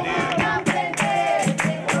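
Capoeira roda music: berimbau and atabaque drum playing a steady rhythm, with group singing and hand-clapping.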